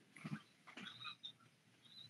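Near silence: faint room tone on a video-call line, with a few soft, brief faint sounds in the first second.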